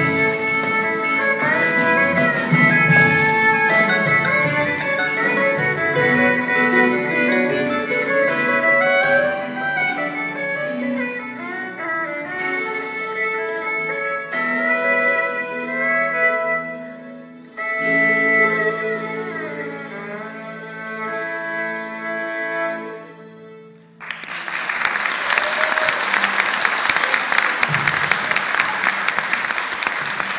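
Live violin and mandolin with an ensemble backing them, playing to a held final chord that dies away about four-fifths of the way through. Audience applause breaks out at once and carries on to the end.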